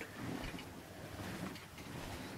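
Faint rustling of a plush toy and a hand moving across a bedsheet.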